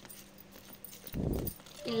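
A metal spatula stirring and scraping a coarse garlic and red chilli mixture against a steel bowl: one short grainy scrape a little over a second in.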